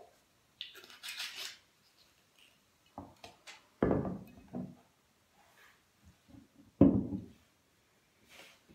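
Sparkling wine poured into a wine glass with a brief fizzing hiss, then several knocks and clinks of a glass wine bottle being set down and shifted on a table, the loudest knock about seven seconds in.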